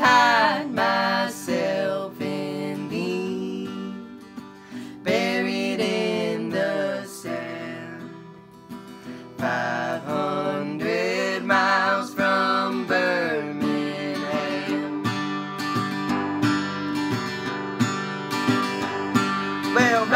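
Acoustic guitar strummed under a man and a woman singing together in harmony, with long held notes.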